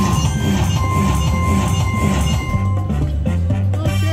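Safari Winnings Diamond Trails slot machine playing its win music with steady electronic tones while the bonus payout counts up on the screen.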